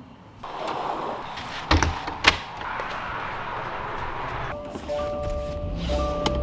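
A car door being shut: two solid thunks about half a second apart over a steady rushing noise. Near the end, a few steady tones come in.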